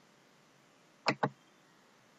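Computer mouse clicked: two sharp clicks in quick succession, about a second in, over a faint steady hiss.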